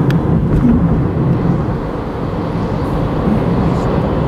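Steady road and engine noise of a moving car, heard from inside the cabin. There is a brief click just after the start.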